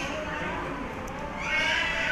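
A woman's high-pitched ululation (uruli) rises over the crowd's chatter about one and a half seconds in: one arching, wavering call lasting about a second.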